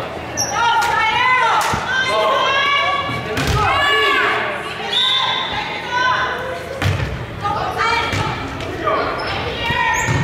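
Girls' voices calling out and cheering in an echoing gym, with a few thumps of a volleyball, bounced before the serve and then struck.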